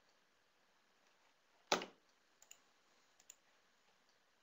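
Clicking at a computer as the screen is navigated: one sharp click a little under two seconds in, then four fainter clicks in two quick pairs.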